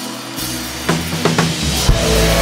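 Live worship band kicking off a song: a rising wash of sound, two sharp drum hits about a second in, then bass and the full band come in near the end.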